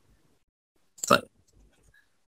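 A man's voice saying one short word, 'tayyib' ('OK'), about a second in; the rest is near silence.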